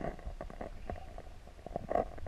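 Muffled underwater sound as heard from a submerged camera: a low rumble of water moving around the housing, with irregular small clicks and crackles and a louder gurgling burst at the start and again near the end.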